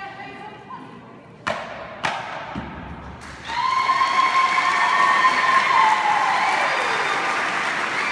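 The last notes of a hula chant die away, then two sharp thumps about half a second apart. About three and a half seconds in, audience applause and cheering voices break out and carry on loudly.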